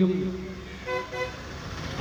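A vehicle horn tooting twice in quick succession, two short toots about a second in.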